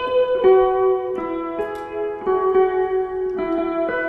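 Electric hollow-body guitar, played clean through effects pedals, in a slow melodic line of long held notes that change pitch every half-second to second.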